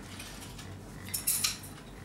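Quiet room tone with one brief, high-pitched handling noise at the table a little after a second in, like a light clink or rustle.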